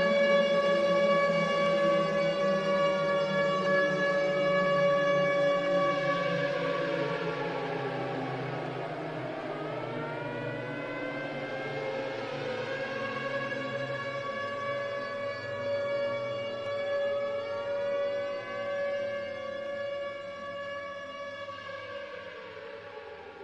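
Civil-defence siren wailing: a held tone with slow, overlapping rises and falls in pitch, fading out gradually.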